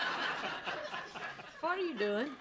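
Sitcom studio audience laughter fading away. A man's voice begins near the end.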